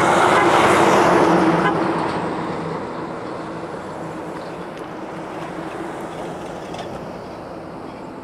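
A road vehicle passing close on a highway, its tyre and engine noise loudest in the first two seconds, then fading steadily as it drives away.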